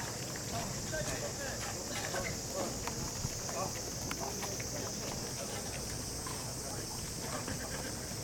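Outdoor tennis-court ambience: faint distant voices and a few scattered light knocks over a steady high-pitched drone.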